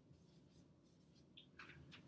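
Dry-erase marker writing a short word on a whiteboard: a few faint strokes, the clearest two near the end.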